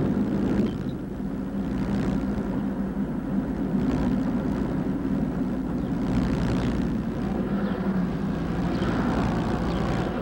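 Steady engine drone and road noise heard inside a car's cabin while driving slowly in town traffic.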